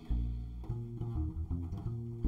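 Upright double bass plucked pizzicato: a line of low, sustained notes, changing about twice a second.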